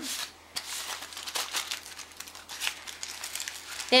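Aluminium foil crinkling irregularly as hands roll up and crimp the ends of a foil packet.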